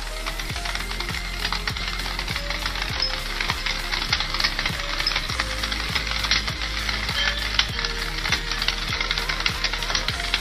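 Stack of clear glass cracking under a slowly closing hydraulic press, a dense run of small crackles and snaps with a few sharper pops. Electronic music with a steady kick drum about twice a second plays underneath.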